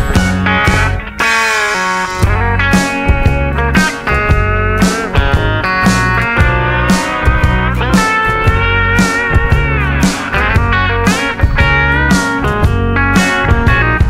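Instrumental break in a country-rock song: drums and bass keep a steady beat while steel guitar and electric guitar play the lead with sliding, bending notes.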